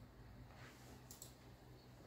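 Near silence with a low steady hum, and faint computer mouse clicks a little over a second in as a program is opened.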